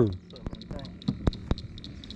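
A few sharp clicks and taps in the second half, the last three about a fifth of a second apart.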